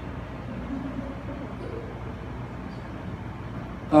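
A pause in speech filled by steady, even background noise of the room, with a few faint indistinct sounds.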